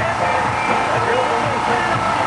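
Suzuki Swift GTI's four-cylinder engine running as the small hatchback drives an autocross course, heard at a distance under a steady background hum, with faint voices about one and a half seconds in.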